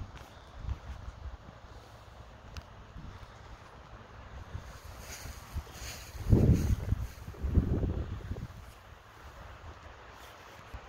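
Wind buffeting the phone's microphone as a steady low rumble, with two stronger gusts about six and seven and a half seconds in.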